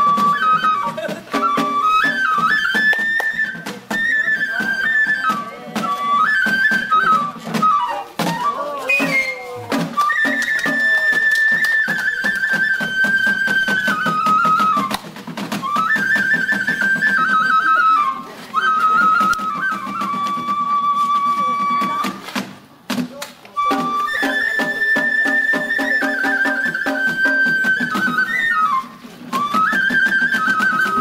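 Japanese bamboo transverse flute (yokobue) playing a stepped, high traditional festival melody for an Ise Daikagura lion dance, with sharp percussion strikes beneath it. The melody pauses briefly twice, about eight seconds in and again past the twenty-second mark.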